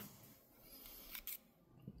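Near silence: room tone, with a few faint short clicks.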